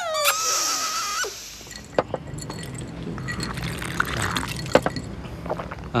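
Glasses clinking with a few small sharp knocks, the loudest near the end. Before that, a held high tone cuts off about a second in.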